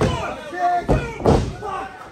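A heavy thud of an impact on a wrestling ring's mat about a second in, with people shouting around it.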